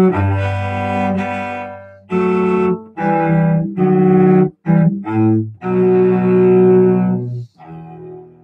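Solo cello bowed in a division (a variation on a theme), with sustained low notes in short phrases separated by brief breaks. The last phrase ends just before the end.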